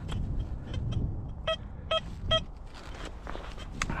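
Steel spade digging in heavy, sticky clay soil, with scattered scraping knocks of the blade. Around the middle come three short, evenly spaced beeps from the metal detector, sounding on the target.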